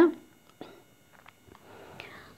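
A pause in a woman's speech: the end of her word, then low room noise with a few faint, short clicks.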